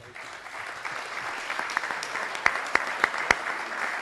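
Applause from the people in a council chamber, swelling over the first second and then holding steady, with a few sharper single claps standing out a little past the middle.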